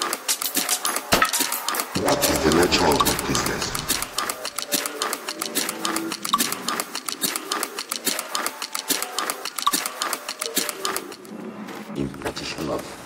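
Electronic music played by a DJ on club decks: a fast, dense run of clicking percussion, with a low bass coming in about two seconds in.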